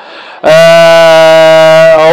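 A man's voice holding one long, level "aaah" as a hesitation filler between phrases, starting about half a second in after a brief pause.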